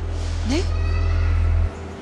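A woman's short, rising "Ne?" ("What?") about half a second in, over a loud, steady low hum that cuts off suddenly near the end.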